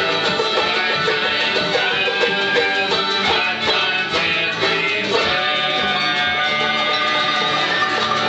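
Folk band playing an instrumental passage: a tin whistle carries the melody over strummed acoustic guitars and a banjo.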